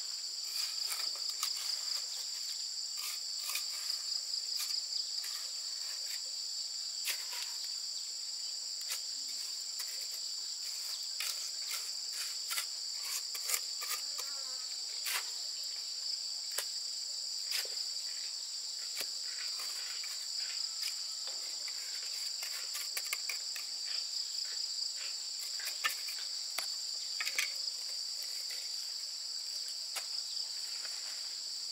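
A steady, high-pitched chorus of insects calling, under frequent short scrapes and taps of a steel trowel working mortar and setting concrete blocks.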